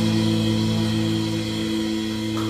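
A band's closing chord held and ringing out at the end of a song: electric bass, guitar and saxophone sustaining a few steady notes that slowly fade, with no drums.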